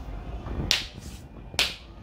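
Two short, sharp clicks, about a second apart.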